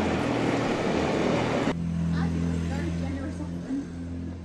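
Street sounds with traffic: a dense rush of noise, then an abrupt change a little under halfway through to a steady engine hum from a motor vehicle, with indistinct voices.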